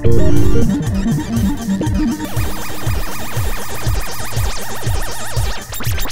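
Electronic synthesizer music: a loud hit at the start, then a run of falling bass sweeps, about two or three a second, under a fast warbling high line.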